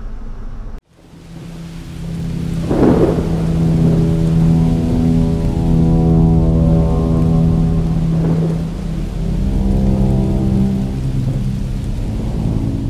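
Thunder and rain sound effects laid over a sustained synth chord for a logo outro, with rolls of thunder swelling about three seconds in and again near eight seconds.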